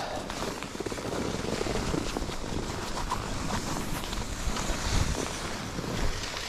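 Steady rush of wind over a body-worn camera's microphone as skis slide over groomed snow, with a brief low rumble near the end.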